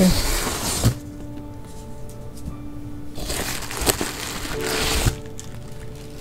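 Cardboard box flaps and plastic bubble-wrap packing rustling and crinkling as a parcel is opened by hand, in two bursts: about a second at the start and about two seconds in the middle, with a couple of sharp clicks. Soft background music with long held notes sits underneath.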